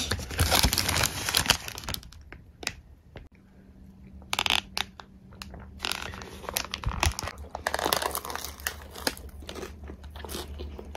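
Paper food wrapper crinkling and rustling as a piece of fried chicken is handled in it. It comes in spells: through the first two seconds, briefly about four seconds in, and again for about three seconds from six seconds in.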